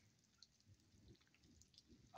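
Near silence, with a few faint drips of water.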